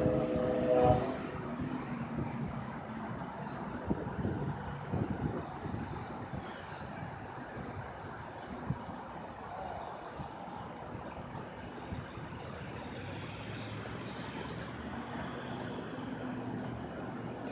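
A train horn chord cuts off about a second in, and the train's rumble then fades over the next few seconds to a steady low background. A thin high squeal runs through the first five seconds.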